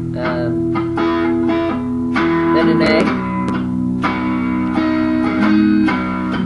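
Electric guitar strumming a palm-muted D chord in a steady rhythm, changing to an A chord about halfway through.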